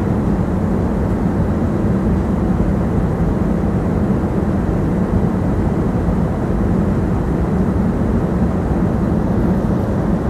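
Steady cabin roar of a Boeing 737 airliner in flight, heard from a passenger seat: jet engine noise and rushing airflow, deep and unchanging.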